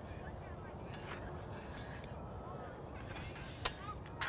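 Quiet outdoor background: a steady low rumble with a couple of faint, short clicks.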